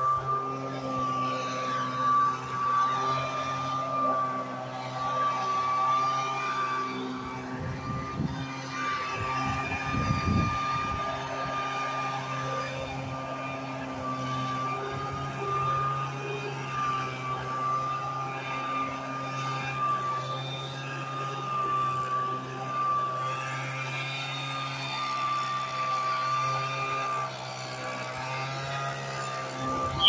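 Leaf blower running steadily and loud, blowing grass clippings off the street after mowing.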